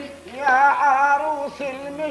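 A solo voice singing a long, ornamented Arabic melodic line whose pitch wavers and bends, coming in about half a second in.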